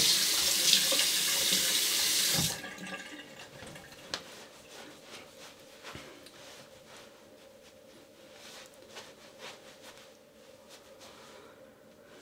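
Bathroom sink tap running as the face is rinsed after a shave. The water cuts off about two and a half seconds in, leaving only faint soft sounds.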